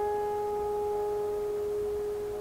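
Grand piano notes held and ringing on, slowly dying away, with no new key struck.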